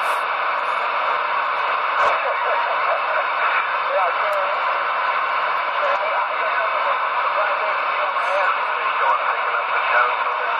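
CB radio receiver hissing with steady static, a weak, garbled voice transmission faintly buried under the noise, the sign of a station in a poor-signal dead spot. A sharp click sounds about two seconds in.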